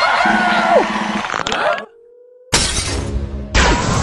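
Cartoon soundtrack of background music and sound effects with gliding, sliding tones. Just under two seconds in it cuts out to near quiet with a faint rising tone. About two and a half seconds in it comes back with a sudden loud crash-like hit, and it jumps louder again about a second later.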